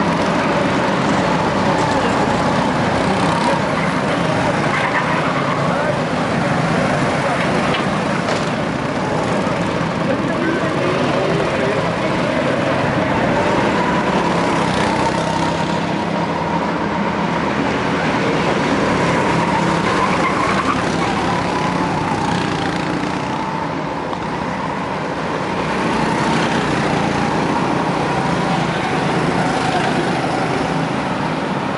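Racing kart engines running on the circuit: a steady high-pitched drone that wavers up and down as the karts lap, with a brief rise about two-thirds of the way through.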